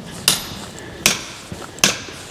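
Footsteps on a paved street, heard as three sharp clicks at an even walking pace.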